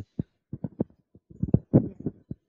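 A string of soft, irregular low thumps and bumps, typical of handling noise as a small handheld microphone is lowered from the mouth.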